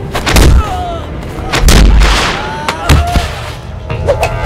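Film fight sound effects: three heavy punch impacts, about a second apart, the middle one the longest and loudest, with short cries between the hits.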